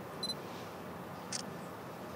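A camera's short high autofocus-confirmation beep, then the shutter clicking once about a second later as the photo is taken.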